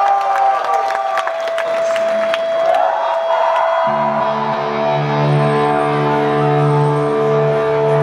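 Live concert music: a single held note rings on while the crowd cheers and claps and a man's voice on the microphone trails off in the first second or so. About four seconds in, a sustained low chord comes in under it and holds.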